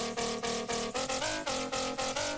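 Xfer Serum synth bass patch playing a short dance-floor drum and bass riff: sine oscillators with FM from oscillator B and sync turned up, giving a gritty but pitched, tonal bass. Short notes about four a second, the pitch stepping up and down.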